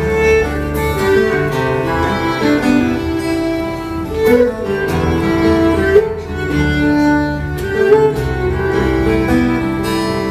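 Large Scottish fiddle ensemble, many fiddles with cellos, playing a lively tune together in a steady rhythm.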